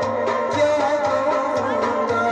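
Live folk song with harmonium: sustained reed-organ chords and melody, a singing voice, and regular percussion strokes keeping the rhythm.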